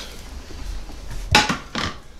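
Two sharp knocks from a nonstick frying pan and its spatula, about half a second apart, after a little handling noise.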